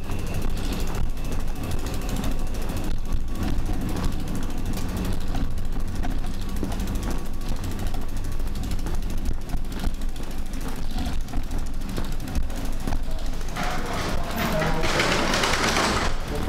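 A bicycle being pushed over tiled paving: a steady rattling rumble with rapid freewheel clicking as the wheels roll. A louder hiss rises near the end.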